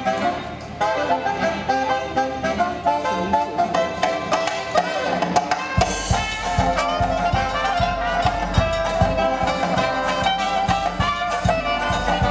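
A New Orleans jazz band playing: saxophones, trombones and trumpet, joined about six seconds in by drums with a steady beat.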